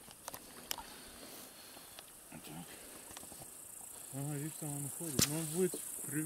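Steady high-pitched insect chirring on a quiet lakeshore, with a few faint clicks and one sharp knock about five seconds in. A man's voice speaks low through the last two seconds.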